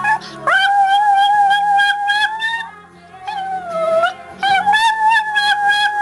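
A chihuahua howling along to music in three long, high held notes, the middle one shorter and dipping in pitch, over a quieter musical accompaniment.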